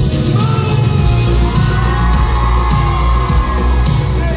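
Loud live pop music with a heavy bass beat and a singer on a microphone, heard from within the audience in a club, with crowd yells and whoops over it.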